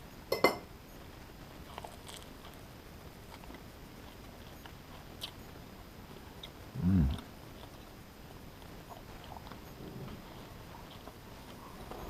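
A metal butter knife clinks once against the butter dish about half a second in, then faint chewing of crusty bread with small crunchy ticks, and a short closed-mouth 'mmm' hum about seven seconds in.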